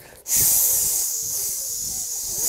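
A man hissing a long, sustained 'sss' through his teeth, loud and steady for about two seconds before cutting off sharply. Faint music lies underneath.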